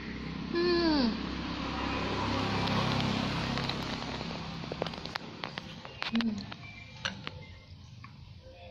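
A woman's short falling "mm" hum about half a second in, with another brief "mm" near the end, as she reacts to hot, spicy noodles. Between them a rushing noise swells and fades over a few seconds, and a run of light sharp clicks follows.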